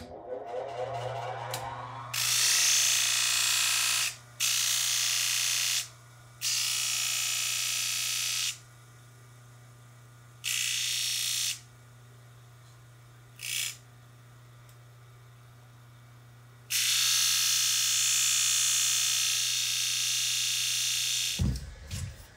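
A large disc sander is switched on and its motor spins up to a steady hum. Wood is pressed against the spinning sanding disc in several grinding passes of different lengths, the longest near the end, and the motor is switched off just before the end.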